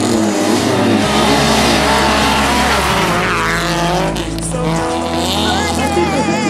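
A rally car's engine revs hard with tyres skidding on loose dirt, its pitch rising about three seconds in, mixed with a backing music track.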